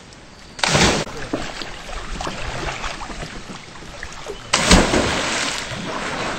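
A person letting go of a rope swing and dropping into a river pool: a loud splash about four and a half seconds in, followed by a second or so of churning water. There is a shorter burst of noise just under a second in.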